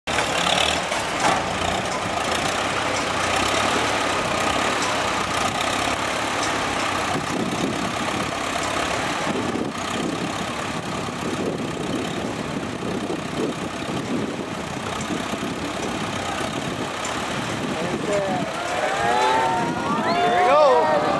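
Old farm tractor engine running slowly as the tractor inches along a tipping balance-beam platform, mixed with crowd voices. Near the end the crowd grows louder, with sliding, whistle-like calls.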